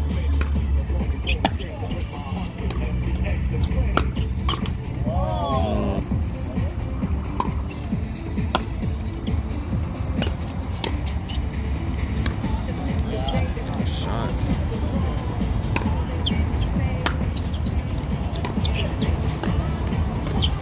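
Pickleball paddles popping against the plastic ball in a doubles rally, sharp hits a second or two apart, over background music.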